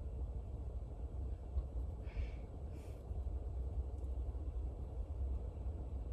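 Car engine running steadily, heard as a low rumble inside the cabin. Two brief soft noises come about two and three seconds in.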